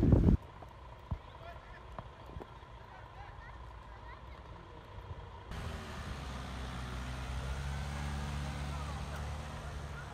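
A brief burst of loud voices cuts off at the very start, followed by a few seconds of faint, quiet outdoor sound. About halfway through, a small van's engine comes in with a steady low hum as it drives slowly along a snow-covered road.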